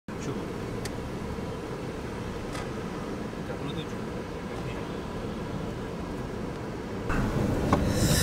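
Car driving, with a steady low rumble of engine and tyres heard from inside the cabin. It gets louder about seven seconds in.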